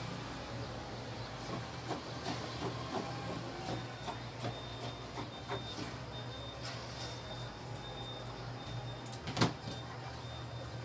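Fabric scissors snipping through the edge of quilted fabric, a series of irregular short snips over a low steady hum. A louder knock near the end as the scissors are set down on the cutting mat.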